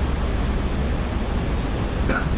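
Steady rushing background noise with a heavy low rumble, constant and with no speech.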